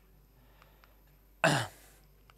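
A man clearing his throat once, a short rough burst about one and a half seconds in.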